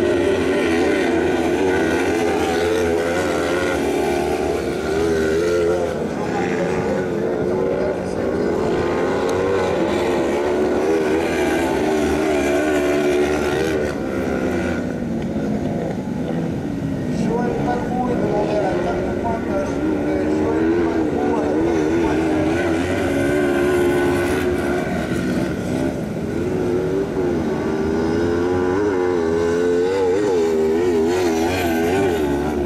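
Several kart cross buggies with 500 cc motorcycle engines racing on a dirt track, engine notes overlapping and rising and falling over and over as the drivers lift off and accelerate through the corners.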